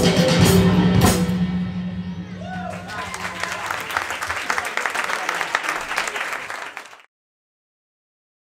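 A live band ends a number with a few last drum-kit hits and a held low note, followed by audience applause and voices in a small club. It all cuts off suddenly about seven seconds in.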